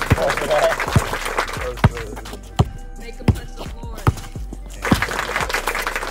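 Basketball being dribbled on a concrete driveway: about six sharp bounces, a little under a second apart, over background music and voices.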